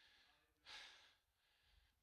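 Near silence broken by one breath drawn into a handheld microphone, a little over half a second in.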